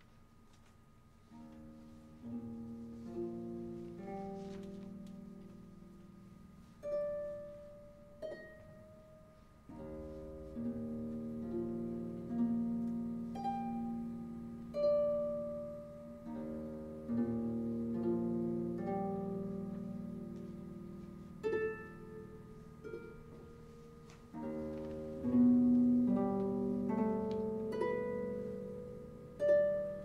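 Harp playing a slow improvised passage of plucked notes and chords, each note ringing and fading. It begins softly about a second in and grows louder toward the end.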